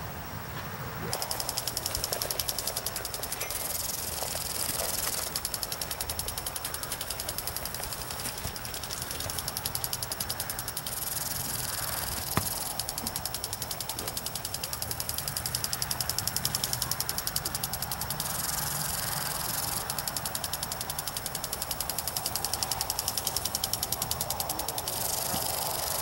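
Lawn sprinkler running: a rapid, steady ticking, with a hiss of spray that swells about every seven seconds as the jet sweeps round.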